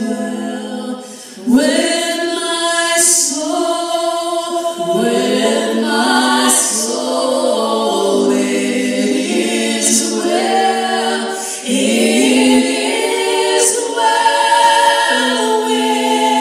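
Two women singing a slow hymn in close harmony through a PA, apparently unaccompanied, holding long notes with short pauses for breath between phrases.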